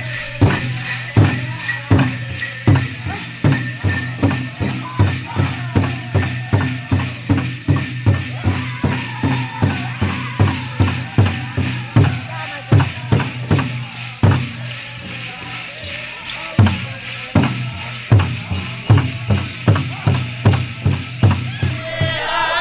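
Powwow drum beaten in a steady, even rhythm with singing, over the jingling of bells and metal cones on the dancers' regalia. The drumbeat drops out for a couple of seconds past the middle, then resumes.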